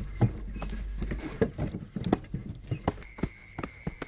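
Horse hooves clip-clopping at a walk on hard ground, with a cart rolling, making a string of uneven knocks over a low rumble that fades after the first second.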